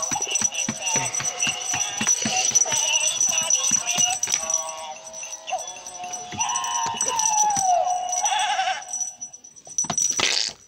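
Gemmy Jingle Jangle animated plush baby goat in a Santa outfit playing its song through its built-in speaker while it dances. A melody of clicking, rattling notes runs until it stops about nine seconds in.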